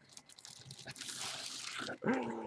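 Plastic jersey bag and a paper ticket crinkling and rustling as they are handled, faintly and irregularly, growing a little fuller after about half a second.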